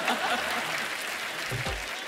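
Studio audience applauding, slowly tapering off.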